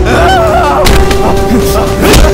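Film fight-scene sound effects: sharp, heavy hits, one about a second in and another at the end, over a held music drone from the background score.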